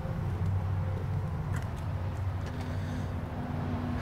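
Steady low hum of an idling engine, with a few faint clicks in the middle.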